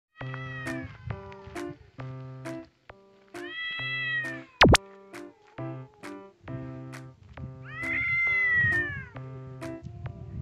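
Stray cat yowling in a fight: three long, drawn-out cries like a baby's wail, each sagging in pitch at the end, the sound of a highly agitated cat. Background music with a bouncy repeated-note tune plays throughout, and a sharp, loud crack comes about halfway through.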